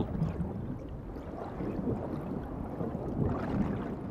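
Steady, low underwater rushing of water, a dull hiss and rumble with no distinct events.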